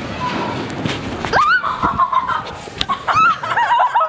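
A person going down a steep metal slide: a rushing rumble of the slide under them, then a rising cry about a second in that is held for about a second, and squealing laughter near the end.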